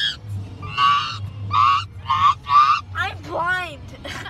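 A person laughing in shrill, honking shrieks: four short bursts, then a squealing voice that swoops down and up near the end. A steady low hum of the car's cabin runs underneath.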